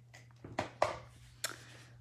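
Card stock being handled while adhesive is applied to it: a handful of short, sharp crackling clicks and rustles between about half a second and a second and a half in.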